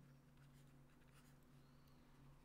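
Near silence: a steady low electrical hum, with faint scratches and taps of a stylus writing on a pen tablet.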